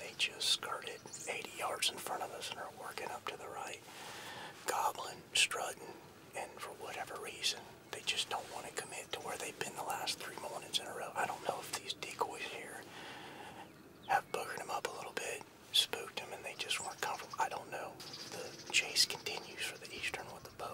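A man whispering to the camera in short phrases with brief pauses, his voice low and breathy with sharp hissed consonants.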